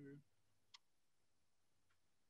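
Near silence: a man's held sung note ends just after the start, then one faint click.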